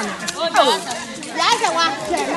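Several people's voices talking and calling out over one another, some of them high-pitched.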